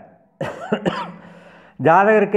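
A man clearing his throat: a sudden rough burst about half a second in with a couple of sharp catches, fading over about a second, before he speaks again near the end.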